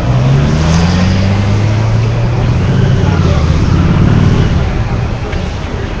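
A motor vehicle's engine running close by, its pitch rising in the first second and then holding steady, with voices in the background.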